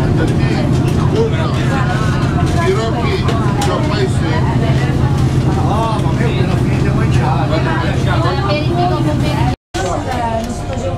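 Boat engine running with a steady low drone while people talk over it. The sound cuts off abruptly for a moment near the end.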